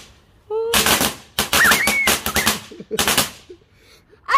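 Firecrackers going off on paving stones: a bang about half a second in, then a rapid run of about ten sharp cracks, and a last couple of bangs near the three-second mark.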